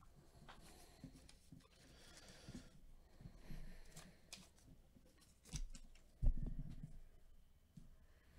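Faint rustling and scraping of a paper trading-card pack envelope being slit open, then a few light clicks and a louder thump a little after six seconds in.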